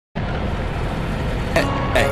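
Motorcycle riding along a road: steady engine and wind noise, heaviest in the low end. A few musical notes come in near the end.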